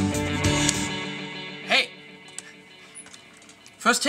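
Electric guitar melody, overdriven through a Jetter Gold Standard pedal, played over a backing track; the guitar stops about a second in and its last notes ring out. The backing track carries on quietly, broken by a short vocal sound and then speech near the end.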